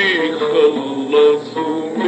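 A man singing an Arabic song in maqam nahawand, his voice bending through ornamented phrases over oud accompaniment.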